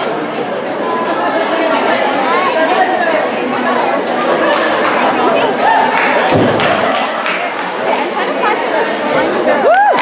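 Spectators chattering in a large gym hall, with one dull, heavy thud about six seconds in from a gymnast landing, and a rising whoop of a cheer near the end.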